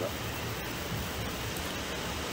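Pause in the conversation: a steady, even hiss of background noise, well below the level of the voices around it.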